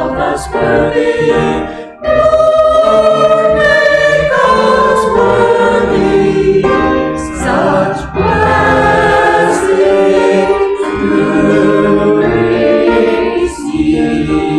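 Small mixed church choir singing together, several voices in held chords, with brief breaks between phrases about two seconds in and again around eight seconds.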